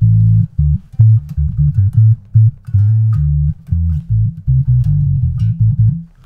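Electric bass guitar played through the Holt2 resonant lowpass filter set to eight poles, fully wet, so only the deep lows pass: a run of short plucked notes with a sharp cutoff above. It gives a bass amp like tone.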